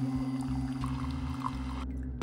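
Keurig single-serve coffee maker brewing, with a steady low hum and a thin stream of coffee pouring into a ceramic mug. The pouring stops near the end.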